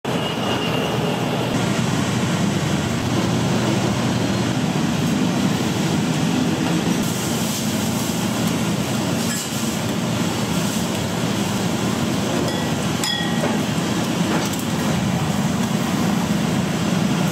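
Steady, loud low roar of a busy noodle-shop kitchen around a steaming noodle boiler, with a few sharp metal clinks from the strainer baskets and ladle.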